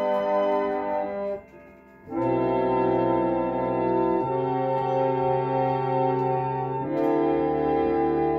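A roughly 120-year-old reed pump organ playing slow, sustained chords, with a brief break between phrases about a second and a half in before the next held chords come in.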